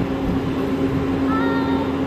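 Skid-steer loader's engine running with a steady hum.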